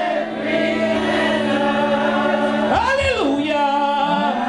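Gospel singing led by a woman's voice through a microphone, in long held notes over a steady low tone, with a swooping rise and fall about three seconds in.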